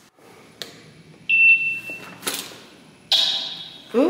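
Elevator destination-dispatch touchscreen giving a single short, high, steady beep as a floor is entered, with a faint click before it and another click after. Near the end comes a hissy rush that fades away.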